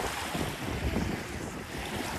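Small wind-driven waves lapping and washing at a lake's edge, with gusts of wind buffeting the microphone in uneven low rumbles.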